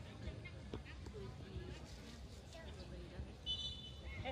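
Faint, distant voices of football players calling across an open pitch, over a steady low rumble, with a brief high-pitched tone near the end.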